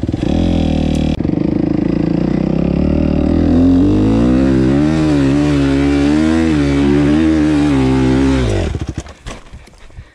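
Suzuki RM-Z 250 four-stroke single-cylinder motocross engine working hard under throttle up a steep sandy hill climb, its pitch rising and wavering with the throttle. Near the end the engine sound drops away sharply as the bike tops the climb and stops.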